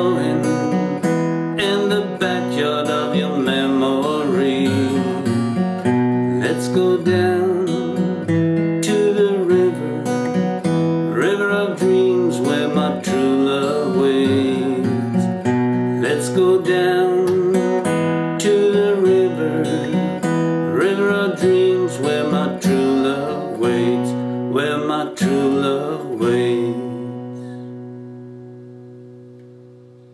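Steel-string acoustic guitar played solo, picked and strummed notes and chords, as the closing instrumental passage of a song. A final chord about 27 seconds in is left to ring and fades out.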